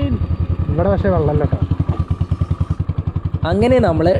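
Motorcycle engine running steadily at low speed, its exhaust beating in a rapid, even pulse, as the bike rolls off tarmac onto a rough gravel track.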